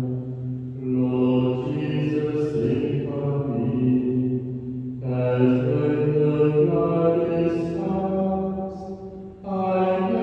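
Liturgical chant: a man's voice singing long held notes in slow phrases of a few seconds, with short breaks about one second in, around five seconds and just before the end.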